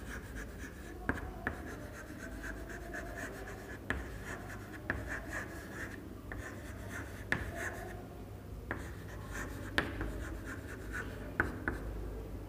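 Chalk writing on a chalkboard: faint scratching of the chalk stick, broken now and then by sharp taps as it strikes the board.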